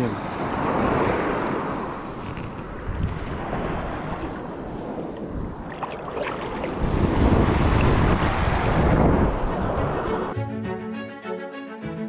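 Baltic Sea waves washing and surging around a person wading, with wind buffeting the microphone. There are two swells, the second louder, about seven seconds in. Background music comes in near the end.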